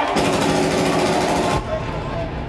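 A loud, harsh, rapid-fire rattling buzz over the club sound system, lasting about a second and a half and cutting off suddenly.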